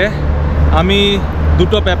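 A man's voice, heard briefly twice, over a steady low rumble.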